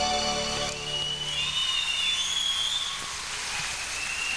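The band's closing held chord ends less than a second in. Audience applause follows, with high whistles sliding above it.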